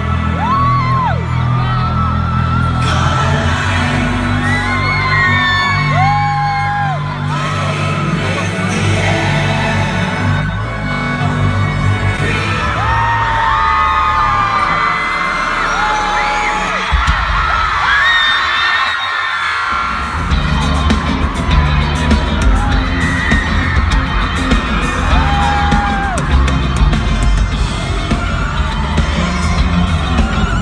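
Loud live concert music with heavy bass, heard from within the crowd, with fans screaming and whooping over it. The bass drops out briefly about two-thirds of the way through, then comes back heavier.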